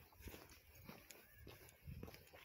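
Faint footsteps on a paved sidewalk, about two steps a second, close to near silence.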